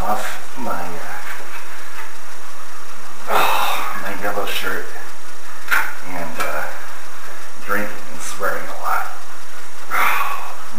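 A person's voice making indistinct vocal sounds with no clear words, broken by a few short sharp clicks.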